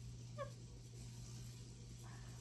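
A woman's single brief, high-pitched excited squeal about half a second in, over a faint steady low hum.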